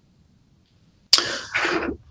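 Near silence, then about a second in a man's short cough in two parts.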